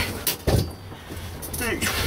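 Handling noise as a sheet of 6 mm plywood is grabbed and lifted, with a rustle at the start and a knock about half a second in. A brief vocal murmur near the end.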